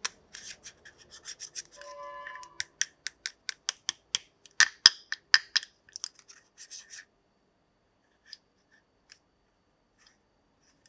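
Small plastic toy pieces being handled, giving a rapid run of light clicks and taps, with a brief pitched tone about two seconds in. The clicking stops after about seven seconds, leaving only a couple of isolated clicks.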